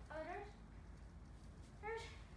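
Two short, high-pitched meow-like vocal cries: one rising and falling just after the start, another near the end.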